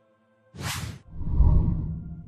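Logo intro sound effect: a quick whoosh about half a second in, followed by a low rumbling swell that fades away.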